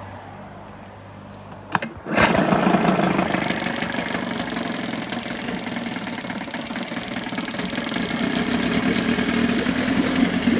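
1978 Chrysler 9.9 hp two-stroke outboard starting from cold: a sharp click, then the engine catches about two seconds in and settles into a steady, rapid idle with its leg in a water-filled test barrel.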